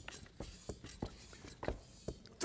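A few faint, short clicks and taps, about six in two seconds, from a bicycle floor pump and its hose being handled at the neck of a glass carboy.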